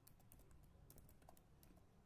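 Faint typing on a computer keyboard: a quick, irregular run of key clicks as a word is typed.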